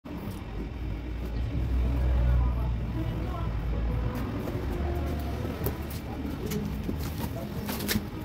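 A low rumble of passing vehicle traffic, then near the end a quick cluster of sharp crackles as scissors cut into the cardboard of a bicycle shipping box.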